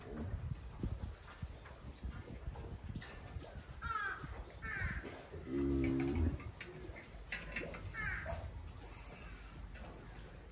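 A Japanese Black cow in labour gives one short, low moan about halfway through. A bird calls a few times around it in short falling notes.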